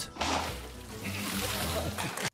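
A ground-level fountain jet shooting water up from a slot between granite blocks: a sudden rushing, spraying hiss of water that starts just after the beginning and carries on, over low background music.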